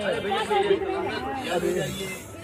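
People talking: voices chattering close by, with no other sound standing out.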